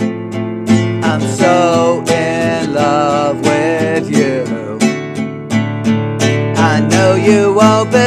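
Nylon-string classical guitar strummed in a steady rhythm, with a man's voice singing along over it.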